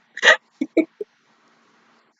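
A woman laughing: one loud burst followed by three quicker, shorter ones, all within about the first second.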